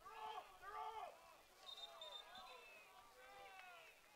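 Faint, distant shouting of several lacrosse players calling out across the field, their voices overlapping.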